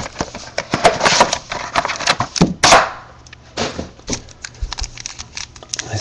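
Hands opening a cardboard trading-card box and handling the plastic-wrapped pack from inside: a run of clicks, crinkles and rustles, loudest a little over two seconds in.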